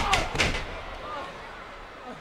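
Two heavy impacts in a pro wrestling ring about half a second apart, as one wrestler strikes or slams the other, followed by a lower crowd background.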